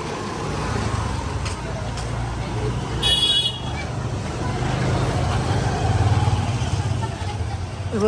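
Street traffic: motorbike engines running past with a low rumble that swells about five seconds in, and a short, high horn beep about three seconds in.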